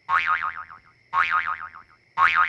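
Two cartoon boing sound effects marking hops, one right at the start and another about a second later. Each is a wobbling twang that dies away in under a second.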